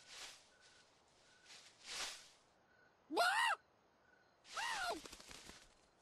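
A cartoon pig character's voice whimpering in distress: a few breathy gasps, then two short cries that rise and fall in pitch, about three and four and a half seconds in.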